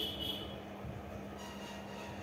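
Ballpoint pen writing on notebook paper, faint, over a steady low hum.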